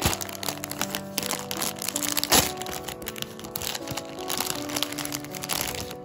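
Plastic food wrapper crinkling and crackling as it is handled and opened and a donut is pulled out, with one sharp loud crackle about two seconds in. Background music plays under it.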